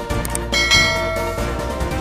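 Background music with a bright, bell-like chime sound effect that strikes about half a second in and rings for about a second. Two light clicks come just before the chime.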